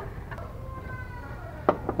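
Steady low background noise with two short, sharp clicks near the end, from metal parts being handled as the timing cover bolts and timing bracket are fitted.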